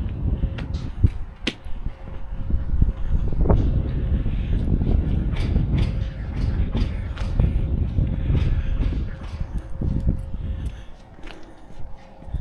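Cargo straps and gear being handled beside a loaded flatbed trailer: scattered clicks, knocks and creaks over a steady low rumble.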